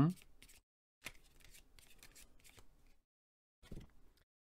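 Tarot cards being handled: a faint papery rustle with a few light clicks as a card is slid off the deck and laid down.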